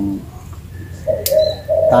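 A dove cooing in low, held notes, with a single sharp snip of pruning shears on a twig a little over a second in.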